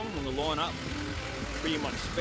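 A singing voice from a song soundtrack, in sustained wavering notes, over a steady low rumble.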